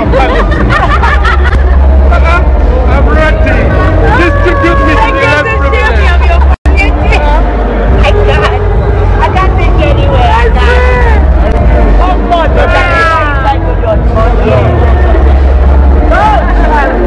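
Loud crowd chatter: many voices talking and calling out at once over a deep steady rumble. About six and a half seconds in the sound cuts out for an instant and comes back.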